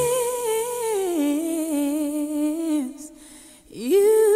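A solo singing voice on a wordless, humming-like line with vibrato: it slides up into a high note, steps down and holds a lower note, and stops about three seconds in. A new sung note slides up just before the end.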